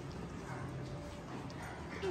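Soft, low-level sounds of two small dogs play-wrestling on a cloth-covered couch.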